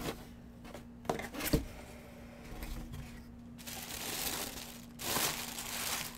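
Cardboard box lid handled with two sharp knocks about a second in, then tissue paper rustling and crinkling as it is pulled open inside the box.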